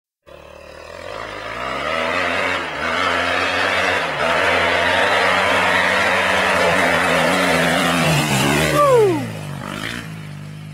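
A 250cc single-cylinder four-stroke motocross bike approaching under throttle, growing louder over the first couple of seconds and then running steadily. Near the end the engine note peaks and then drops sharply in pitch.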